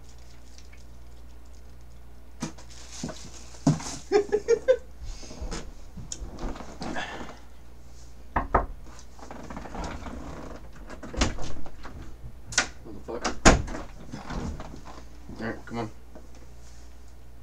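Handling noises: a series of sharp knocks and thumps, the loudest three in the second half, with some rustling and brief low voice sounds.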